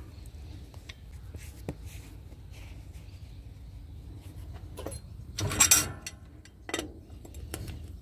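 Faint rustling and light ticks of a cloth rag wiping a steel hubcap wrench and greasy hands, with one brief louder sound a little past halfway.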